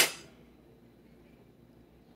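A single metallic clang right at the start, a metal pizza server knocking against the perforated metal pizza pan, ringing off within a fraction of a second. Then only faint room tone.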